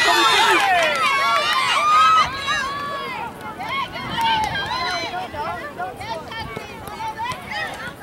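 Spectators and coaches shouting on a soccer sideline, several high-pitched voices calling over one another. The calls are loudest in the first two seconds, then thin out to scattered shouts.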